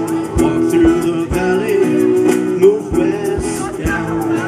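Live acoustic band music: acoustic guitars strumming over a steady low beat, with a long held, slightly wavering sung melody on top.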